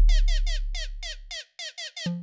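Novation Circuit groovebox playing a 160 BPM techno pattern as the kick drum drops out and the deep bass fades away over about a second and a half. What is left is a short synth blip that falls in pitch, repeating about five times a second.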